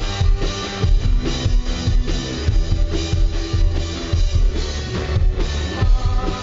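Live indie pop-rock band playing, led by a drum kit beating steadily on kick and snare over a sustained low bass line, as heard from the crowd in the club.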